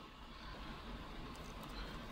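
Quiet room tone with a steady low hum, and a few faint clicks late on as meter test probes are pressed and shifted against the metal contacts of a LiPo battery's XT60 connector.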